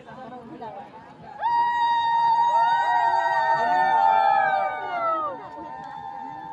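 Several loud, sustained horn-like blown tones start together about a second and a half in, overlapping and sliding in pitch, and fade after about four seconds, leaving one weaker tone. A crowd murmurs underneath.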